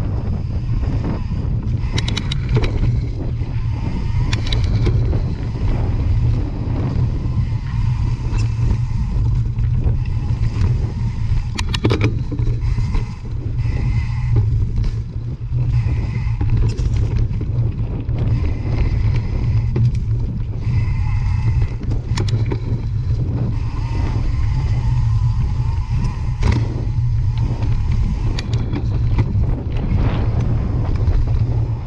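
Mountain bike rolling fast over leaf-covered dirt singletrack, heard through a handlebar-mounted camera: a heavy, steady low rumble of wind buffeting the microphone, with the rattle and crunch of the tyres on the trail and a few sharp knocks from bumps.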